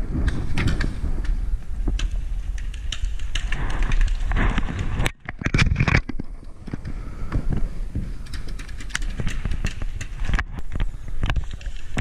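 Wind buffeting a head-mounted action camera's microphone as the wearer moves about, mixed with many sharp knocks and rattles from footsteps and handled paintball gear. The sound briefly drops out about five seconds in.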